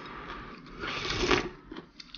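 A person slurping strands of food from a pot of spicy red-oil mao cai, one long hissing slurp from about a third of the way in to past the middle.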